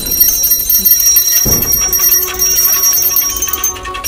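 Puja hand bell ringing continuously, a sign that the aarti is under way. There is a single low thud about a second and a half in.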